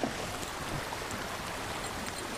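Steady hiss of gentle waves washing at the shoreline.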